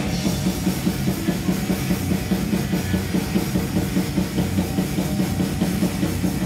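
Live metal band playing loud: electric guitar over a fast, steady drum-kit beat of several hits a second.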